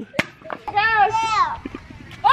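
A child's high-pitched shout lasting under a second, preceded by a sharp knock as a hollow plastic bowling pin is set down on the concrete sidewalk.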